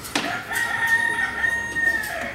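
A long, high call held at one steady pitch for about a second and a half, sliding up into it about half a second in. A sharp knock comes just before it.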